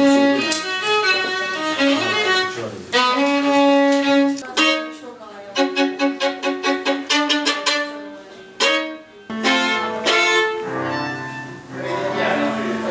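Solo violin played with the bow: a few held notes, then a run of quick, short detached strokes, a brief pause, and a few more notes. Voices talk over the last second or so.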